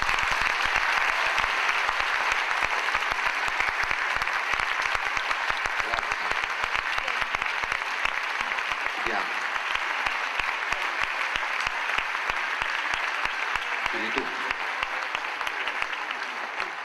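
Audience applauding: dense, sustained clapping from a large crowd that starts abruptly and eases slightly near the end.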